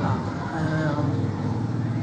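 A low, steady engine hum, with a short spoken word at the start.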